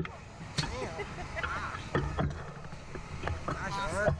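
Indistinct voices of the ride's riders, in short broken snatches, with a few sharp clicks or knocks scattered through and a low steady rumble underneath.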